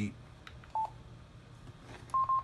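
A single short key beep from the Yaesu FTM-6000R mobile transceiver as a front-panel button is pressed, a little under a second in, with a faint button click just before it; otherwise low room tone.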